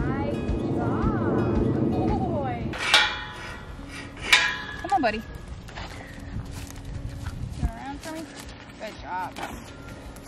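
Background music for about the first three seconds, then quieter outdoor sound with a few sharp metallic clinks and knocks and short, quiet voice sounds.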